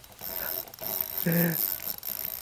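Spinning reel clicking rapidly while a freshly hooked trout is played on the line, with a short voiced exclamation a little over halfway through.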